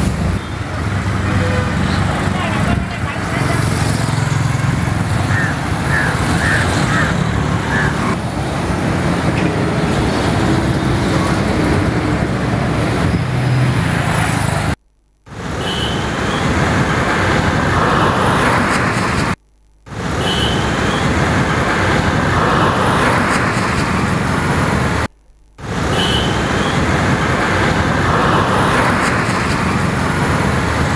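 Steady roadside traffic noise of vehicles passing on a road. It cuts out three times, briefly, in the second half.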